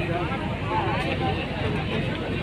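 Crowd chatter: several people talking at once close by, over a steady low rumble.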